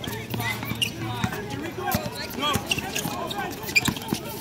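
Basketball being dribbled and bounced on an outdoor court, a series of sharp knocks with the loudest one near the end, among players' voices calling out.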